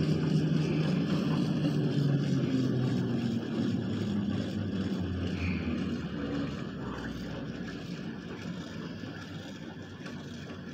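Steady rumble and low hum of an aerial tramway cabin running along its cables, heard from inside the cabin, fading gradually as the car slows toward the upper terminal.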